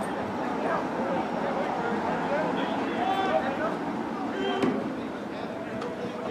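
Distant voices and chatter at a sports field, with a few short calls heard over a steady background hum.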